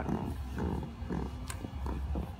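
Aluminium-framed folding camp cot creaking under a man's weight as he shifts and rolls on it, with a sharp click about a second and a half in.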